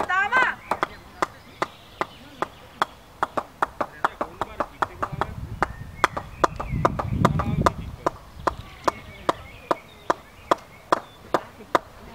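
A steady series of sharp knocks, about three to four a second, going on without a break. A low rumble swells and fades in the middle.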